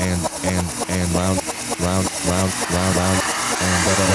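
Techno with a chopped vocal sample stuttering in a fast loop over pulsing bass notes.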